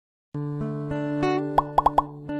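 Channel intro jingle: music that starts about a third of a second in, with four quick rising plop sound effects near the end.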